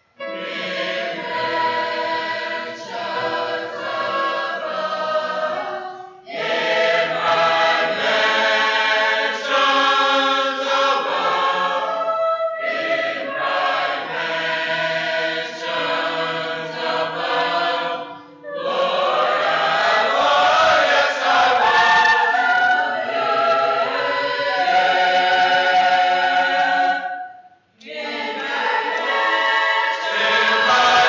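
A choir singing in long phrases, with brief pauses between them.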